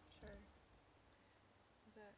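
Near silence: a faint, steady, high-pitched insect drone in the woods, with a brief faint voice about a quarter second in.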